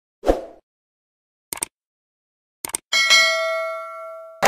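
Outro animation sound effects: a short rush of noise, two brief clicks, then about three seconds in a bright notification-bell ding that rings on and fades slowly.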